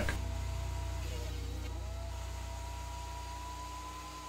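A low, steady hum with a few faint held tones above it, fading slowly away.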